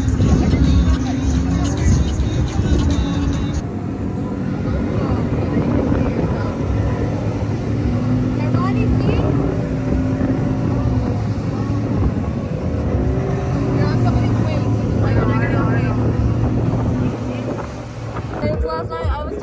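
Boat under way: a steady motor drone with water rushing past the hull and wind on the microphone. Voices and music are mixed in.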